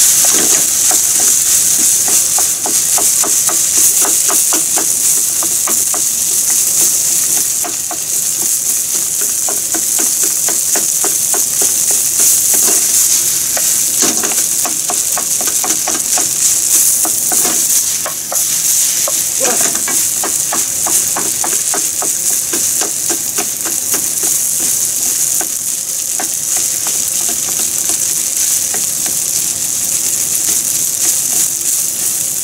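Fried rice sizzling in a stone-coated nonstick frying pan over a gas flame while a wooden spatula stirs and scrapes it, with quick repeated scraping strokes over a steady frying hiss.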